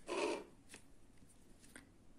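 A short rasp at the start as silk thread is pulled through needle-lace stitches, then two faint ticks of the needle and thread being handled.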